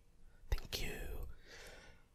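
A click, then about a second of faint whispered voice.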